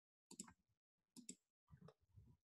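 Near silence broken by three faint, short clicks of a computer mouse, spaced about half a second to a second apart.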